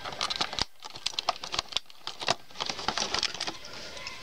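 Cardboard box packaging being handled and pulled apart, a run of irregular light taps, scrapes and rustles.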